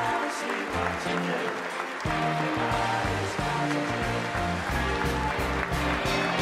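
Upbeat music playing over a large crowd applauding, with a deep bass line coming in about two seconds in.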